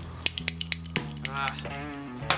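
A lighter clicked about eight times in quick succession, in the first second, without catching: it is out of fuel. Soft background music runs underneath.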